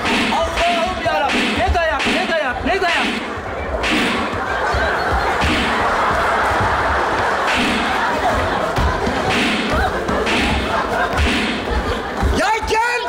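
A staged slapstick brawl in front of a live audience: repeated thuds and slaps on the stage floor as actors pile on and beat a man, with shouting voices early on and loud audience laughter filling the hall from about four seconds in.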